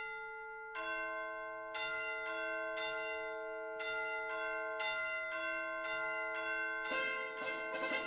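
A bell ringing ding-dong on the soundtrack, struck over and over on two alternating pitches, each note ringing on. Near the end, quick-moving music comes in over it.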